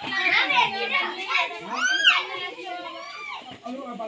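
Several people talking over one another, among them high, child-like voices; a loud high call that rises and falls about two seconds in stands out above the chatter.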